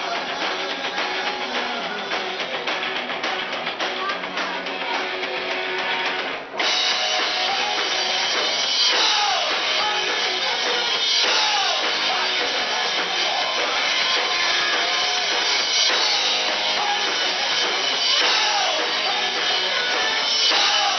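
Live rock band playing electric guitars and drum kit. About six and a half seconds in the sound dips for a moment, then the band comes back in louder and brighter.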